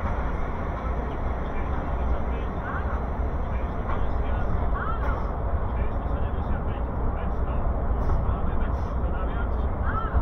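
Low, steady rumble and running noise inside a passenger train coach as the train pulls slowly out of a station.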